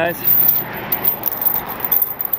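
Steel tow chain jangling and clinking as it is lifted and handled by hand.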